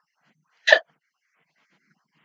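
A single short vocal burst from a person, like a hiccup, about a third of a second in; otherwise quiet.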